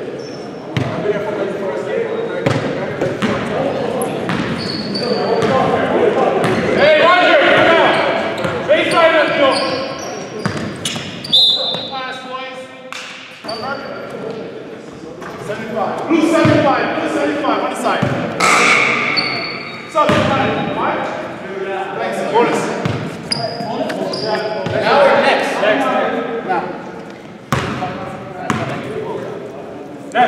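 Echoing gym sound of a basketball game: players' voices calling out over a ball bouncing on the hardwood floor, with sharp knocks and short high squeaks.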